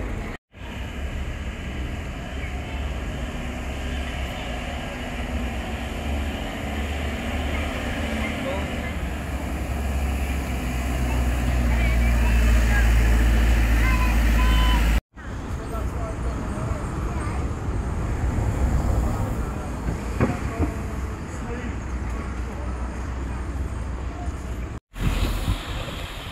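Outdoor street ambience with traffic and the voices of passers-by. In the middle stretch the engine of a tourist road train runs close by, its low rumble building and then cutting off abruptly. The sound drops out briefly twice at edits.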